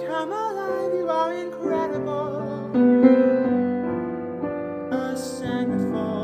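A grand piano playing a swung jazz arrangement of a pop song. A woman's singing voice wavers over the chords in the first second or so.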